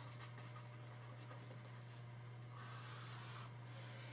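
Faint scratching of a stylus writing a word and drawing a long stroke on a tablet, a little louder for about a second in the second half, over a steady low hum.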